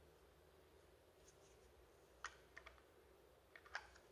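Faint clicks and light taps of the plastic casings of Einhell 18 V battery packs being handled, a few about two and a half seconds in and a few more near the end; otherwise near silence.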